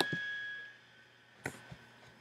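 A near-quiet pause in a small room: a faint high tone fades out over the first half second, then a single short click about a second and a half in, followed by a fainter tick.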